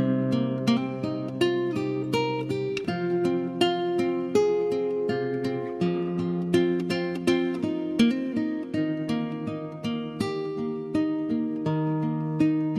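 Instrumental background music on a plucked string instrument: a melody of picked notes, several a second, over held low notes that shift every couple of seconds.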